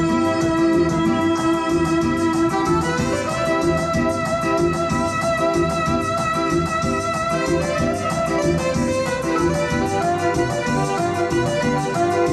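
A dance band playing an instrumental passage, with an electronic keyboard carrying a sustained, organ-like melody over a steady quick beat.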